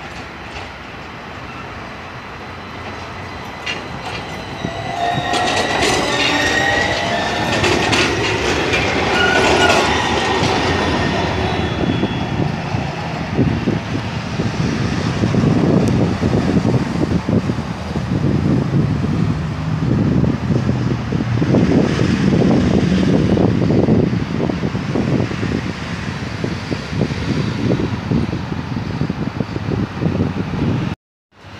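Athens tram approaching and passing close by. A spell of high-pitched squealing tones comes a few seconds in, followed by a long, loud rumble and clatter of steel wheels on the rails.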